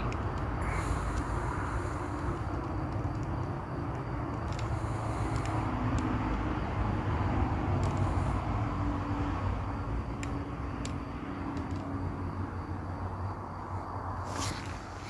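Steady low outdoor rumble and hiss from a night-time field recording, with a faint hum through the middle and a few scattered ticks.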